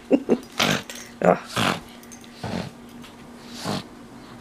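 Pug grunting and snorting in about half a dozen short, rough bursts as he mauls a plush toy.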